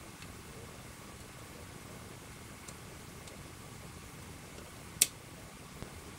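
Quiet room hiss with a couple of faint handling ticks, then one sharp click about five seconds in as a small clear plastic part is handled.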